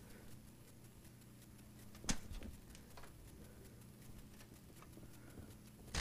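Faint handling of small parts inside a computer case, with one sharp click about two seconds in and a softer one about a second later, over a low steady hum.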